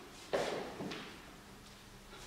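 A soft thump about a third of a second in, then a lighter knock just before one second: a dancer's sneaker steps on a wooden floor.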